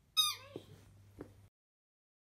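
A Shih Tzu–Papillon cross puppy giving one short, high-pitched whimper that falls in pitch, followed by a couple of faint clicks.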